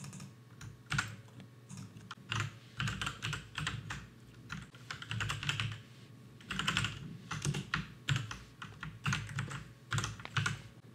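Computer keyboard typing: irregular runs of keystrokes with short pauses between them.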